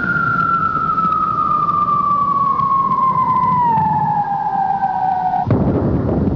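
A warning siren holds one long tone that falls slowly in pitch. About five and a half seconds in it stops, cut off by the sudden bang of a rock blast under a blasting mat, with a rumble after it.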